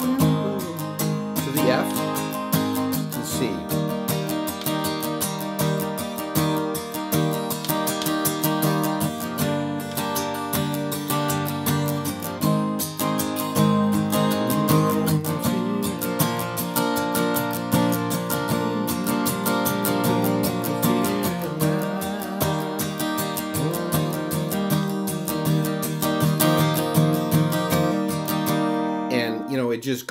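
Acoustic guitar, capoed, strummed in a steady, even up-and-down rhythm through a chord progression going to E minor and then C, G, E minor, F shapes. The strumming stops about a second before the end.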